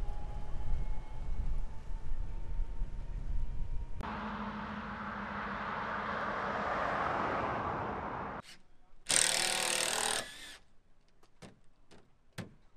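Outdoor ambience: wind rumbling on the microphone, then a vehicle passing on a road, swelling and fading. Near the end a cordless drill whirs for about a second as it drives a screw into plywood, followed by a few small clicks.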